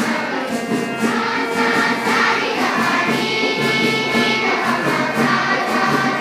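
A large group of schoolchildren singing a song together.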